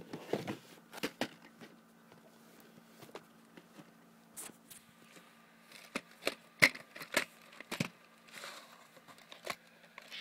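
VHS tapes and their plastic cases being handled: scattered clicks, knocks and rustling, with the sharpest knocks about two-thirds of the way through.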